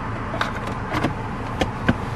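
A few light plastic clicks and knocks from the centre-console storage compartment being handled and its lid shut, over a steady background rush.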